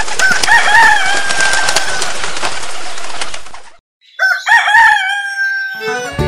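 A rooster crowing twice, each crow ending in a long, slowly falling held note. The first crow is over a steady hiss of background noise that fades out before the second.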